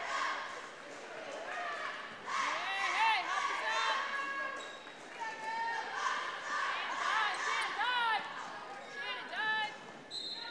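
Basketball game play on a gym court: short, high-pitched squeaks repeating irregularly throughout, with a ball bouncing and the voices of cheerleaders and spectators in the hall.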